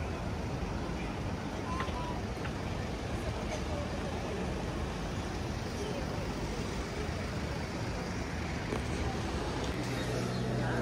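City-centre street ambience: a steady rumble of road traffic with indistinct voices of passersby.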